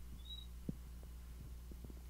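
Low steady electrical hum with a few faint soft knocks, one slightly sharper about two-thirds of a second in.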